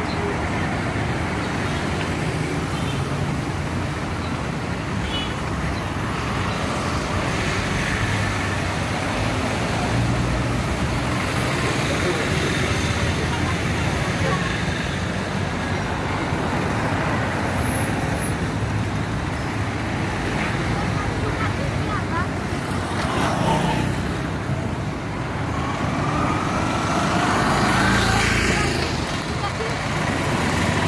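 Steady street traffic: motor vehicles, among them three-wheeled auto-rickshaws and minibuses, running past, with people's voices mixed in. Near the end an engine's note rises as a vehicle passes close.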